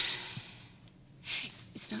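A woman's heavy, breathy sigh at the start, followed by another audible breath about a second later, just before speech resumes.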